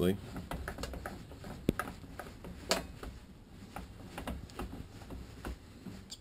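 Light clicks and a low mechanical rumble from the carriage of a restored South Bend metal lathe being run along its bed by hand, the feed gearing disengaged; it moves smoothly, with a little play. A sharper click comes a little under two seconds in and another near three seconds.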